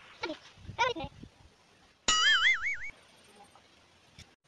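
An added cartoon-style sound effect: a loud electronic tone with a fast, even wobble in pitch, starting suddenly about halfway through and cutting off under a second later. Two short voice-like cries come before it.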